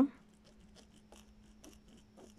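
Faint, irregular scratching and light ticks of a pencil tip drawing a mark on cloth stretched tight in an embroidery hoop, over a low steady hum.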